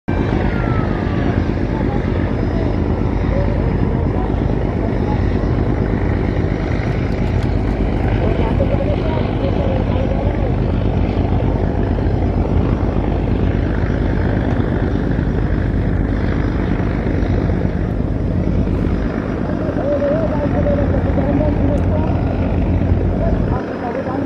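Heavily loaded river passenger launch passing at speed: a steady, loud low engine thrum with the wash of its bow wave, and voices mixed in.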